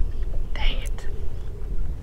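A man's short breathy whisper about half a second in, over a steady low rumble of wind on the microphone, with a light click or two just after.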